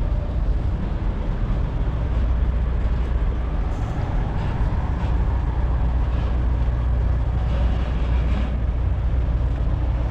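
Steady low rumble of big truck engines idling, with a slight swell about four to six seconds in.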